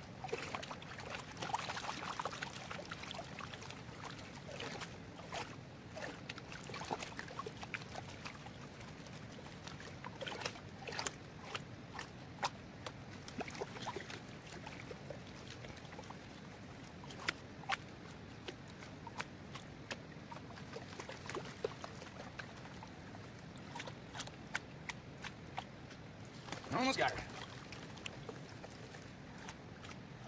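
Water sloshing and swishing as a green plastic gold pan is swirled and dipped in shallow creek water to wash gravel down, with many small clicks and splashes scattered through it.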